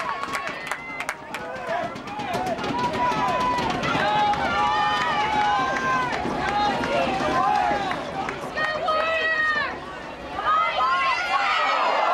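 Several voices shouting and calling over one another outdoors, as spectators and players do at a soccer match. There is a brief lull about ten seconds in.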